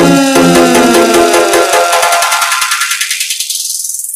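Electronic dance music from a nonstop remix mix: the kick-drum beat drops out about a third of a second in. A rising filter sweep then strips away the bass from the bottom up while the music fades, the build-up of a transition.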